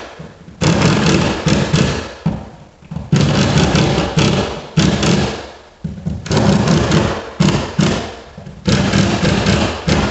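Small cordless drill/driver running against the drywall around an electrical box in about six short bursts of roughly a second each, each burst with a steady low motor hum.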